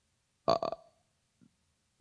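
A man's short hesitant "uh" into a handheld microphone, two quick pulses about half a second in, with near silence around it.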